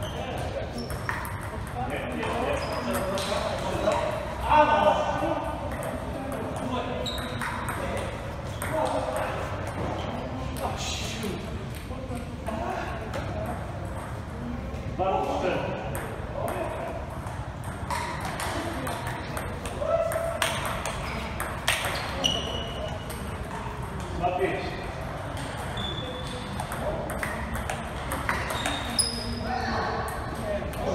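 Table tennis ball clicking off paddles and the table in irregular runs of hits during rallies, with voices in the background.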